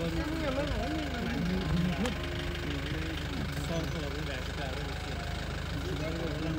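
A vehicle engine idling with a steady low rumble, with people talking over it.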